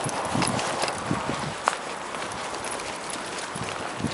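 Footsteps and a dog's paws on asphalt during a walk beside a bicycle: irregular soft steps with scattered light clicks.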